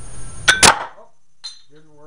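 Small cast-iron weight plates knocking together as they are handled: two sharp metal clacks in quick succession about half a second in, then a lighter click.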